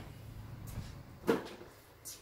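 A sharp knock about a second in, with a fainter tap before it, as the cordless polisher is picked up and handled; otherwise a low steady background.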